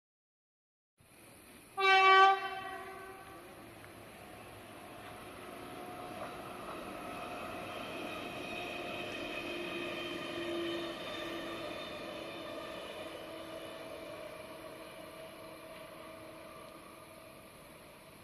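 Electric multiple-unit passenger train sounding one short horn blast about two seconds in. It then runs past: its sound swells to a peak about ten seconds in and slowly fades, with a steady whine over the rail noise.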